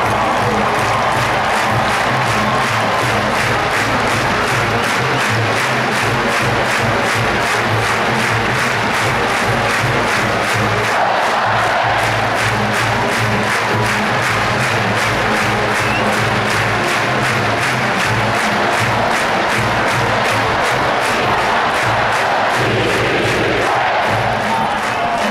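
University marching band playing in a stadium, brass over a steady drum beat, with crowd noise underneath.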